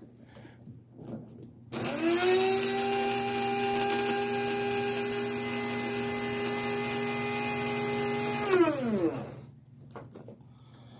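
Electric blade coffee grinder running, chopping dried hot peppers into a finer powder. It starts abruptly about two seconds in, holds a steady whine for about seven seconds, then winds down with a falling pitch near the end.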